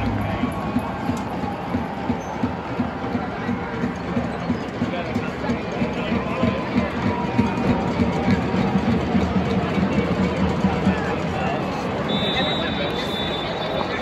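Crowd chatter in a large domed stadium: many spectators talking at once, with faint music underneath. A short high steady tone sounds near the end.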